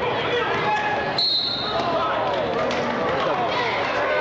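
Basketball crowd talking and calling out. About a second in, a referee's whistle blows once, a shrill tone lasting about half a second, stopping play.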